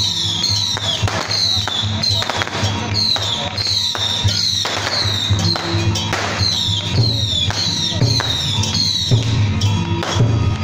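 Procession music with a steady bass beat and a high tone that falls over and over, about twice a second. A few sharp bangs cut through it.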